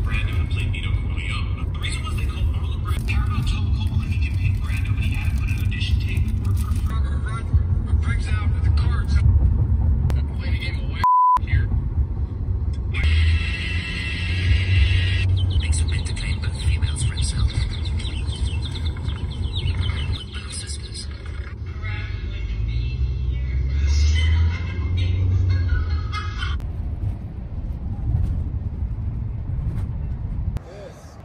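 Road rumble inside a moving car's cabin, with voices and music over it. About eleven seconds in, a short one-tone censor bleep briefly replaces all other sound.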